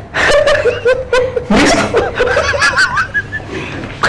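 Men laughing: a run of short chuckles, then louder, higher-pitched laughter from about a second and a half in.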